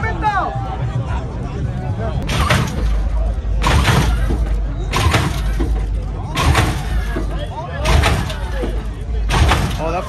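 Hydraulic lowrider hopping its front end over and over: a heavy slam and clatter about every second and a half as the car is launched and comes down, over a low rumble of the hydraulics, with the crowd shouting.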